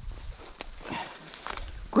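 Footsteps through tall dry grass and brush, with irregular rustling and crackling of the stems underfoot.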